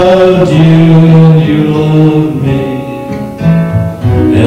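Acoustic-electric guitar being strummed while a man's voice sings long, held notes in a folk song.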